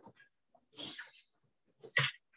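A short breathy noise from a person near the microphone, about a second in, mostly a high hiss, followed by a brief second burst of sound near the end.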